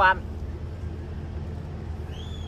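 Steady low hum of background noise, even in level, with no distinct events.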